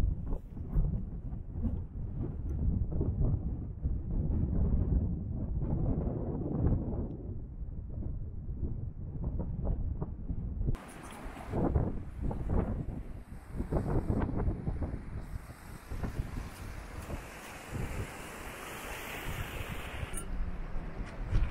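Wind buffeting the camera microphone, a heavy, uneven low rumble. About eleven seconds in it changes to a brighter, hissier wind noise.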